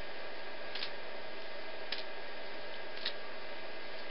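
Soft taps of small spongy juggling balls landing in the hands, about one a second, over a steady background hiss.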